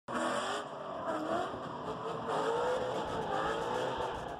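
Race-car sound effect: tyres squealing with a wavering, rising and falling pitch, starting suddenly.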